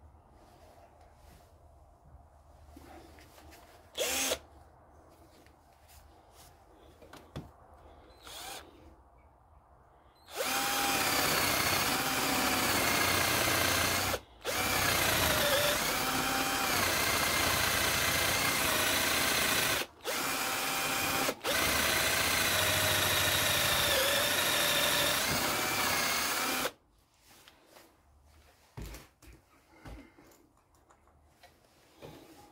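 Cordless drill boring into a softwood timber rail. It runs for about sixteen seconds with three short pauses, its pitch dipping and rising as the load on the bit changes. A couple of short knocks come before it.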